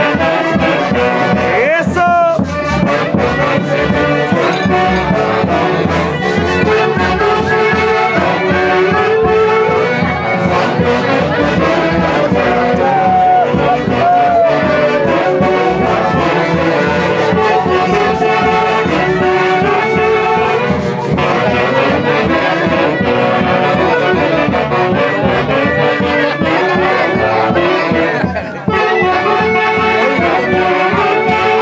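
An Andean festival orchestra playing lively, brass-led dance music with a steady beat, trumpets and other horns carrying the tune.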